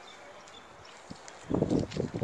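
Quiet outdoor background, then from about a second and a half in, a run of loud, irregular low thumps and rumble.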